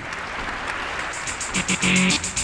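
Audience applause, joined about one and a half seconds in by music with a quick, regular beat.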